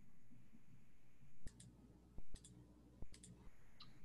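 Quiet room tone broken by several sharp small clicks, some in quick pairs, starting about a second and a half in.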